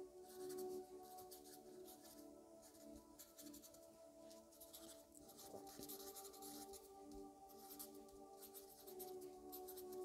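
Pen writing on paper: faint, quick scratching strokes that come in clusters, over a soft, steady drone of ambient music.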